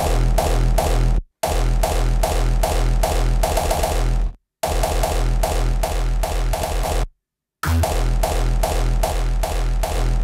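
Hardstyle kick drum with its layered sub-bass playing in a steady pounding beat, lightly saturated through an analog tape machine. The playback breaks off for short silences about every three seconds.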